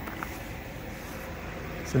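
Steady whir of electric fans: a Bionaire space heater's blower running on low heat, along with a small fan, both powered from a portable power station's inverter.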